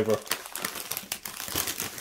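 Plastic crisp packet of Mini Cheddars Sticks crinkling and rustling as it is handled, a dense run of irregular crackles.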